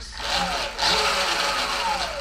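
Sur-Ron electric dirt bike's motor and drivetrain spinning the raised rear wheel as a newly wired Domino throttle is twisted to test it. A whine rises in the first half-second and falls away near the end, over steady mechanical running noise.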